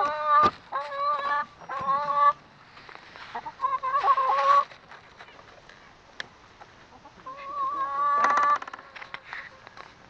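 Hens calling from the coop: a run of drawn-out, level-pitched squawks in short bursts over the first half, then one longer call that breaks into a quick rattling cackle near the end.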